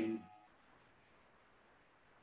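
Near silence: a man's voice trails off at the very start, then only faint room tone.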